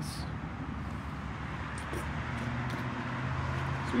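Steady outdoor background noise with a low hum that grows slightly stronger about halfway through.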